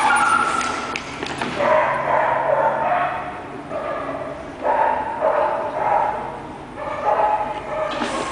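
Young Border Collie barking and yipping in several bouts of a second or so each, with short pauses between.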